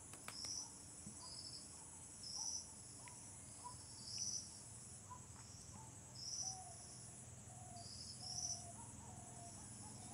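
Felt-tip marker dotting on a whiteboard: about eight short, high squeaks at irregular intervals as small filled dots are marked one after another. A faint steady high-pitched whine runs underneath.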